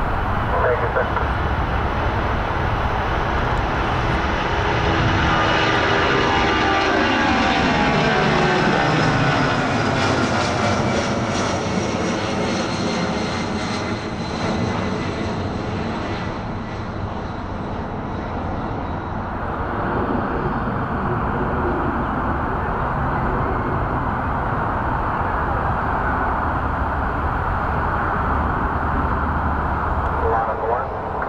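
Delta Boeing 757-200 twin-engine jet taking off at full thrust. Its engine roar carries a whine that falls steeply in pitch a few seconds in as it passes, then the sound grows duller as the jet climbs away.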